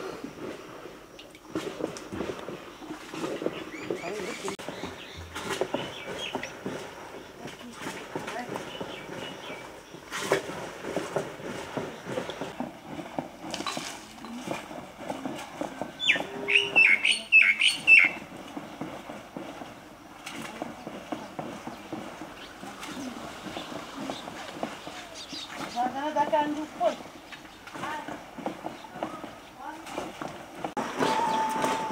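Rural yard ambience with indistinct voices in the background. About halfway through, a small bird gives a quick run of sharp chirps.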